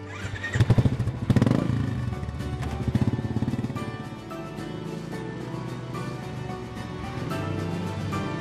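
Motorcycle engine revving loudly in the first two seconds, then running on more steadily under background music.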